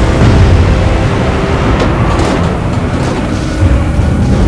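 Film sound effects of a tanker in heavy storm seas: a loud, sustained low rumble of wind, waves and straining ship, with trailer music underneath.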